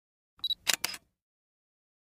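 Short logo-intro sound effect: a brief high ping about half a second in, followed at once by two sharp clicks in quick succession, all over within the first second.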